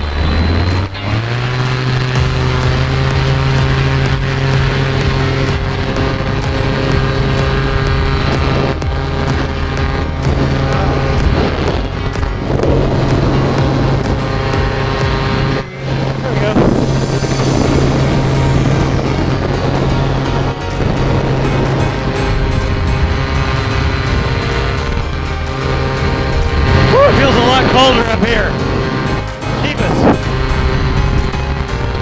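Paramotor engine running at high throttle, its pitch rising about a second in and then holding as a constant drone through the takeoff and climb. Background music with a singing voice plays over it.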